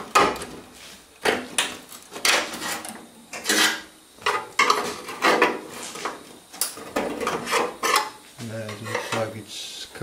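Steel sheet-metal panels of a 1970 Dodge Challenger fender being pried apart along the flange with a steel rod after their spot welds were drilled out: irregular metallic clanks, scrapes and rattles, with a short low hum near the end.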